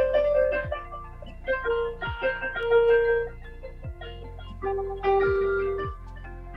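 Electronic keyboard played by hand: a melody of held notes over chords, in louder and softer phrases, with a low thud that falls in pitch on some beats.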